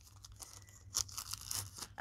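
Faint rustling of plastic packaging being handled, with a brief crackle about a second in.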